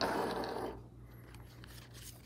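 Clear plastic card sleeve rustling and crinkling as a trading card is picked up, lasting under a second, then only faint room tone.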